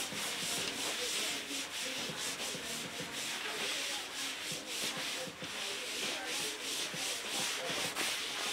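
A cloth wiping down the surface of a padded lash bed in quick back-and-forth strokes, several rubs a second.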